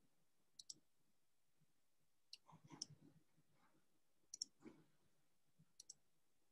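Near silence broken by several faint computer mouse clicks, some as quick double-clicks.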